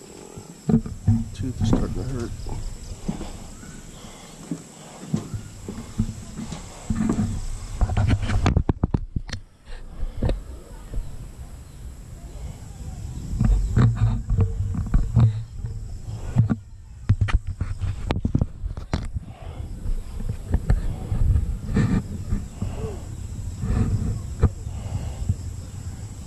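Wind buffeting the microphone in irregular low rumbling gusts, with scattered sharp knocks and clicks around the middle.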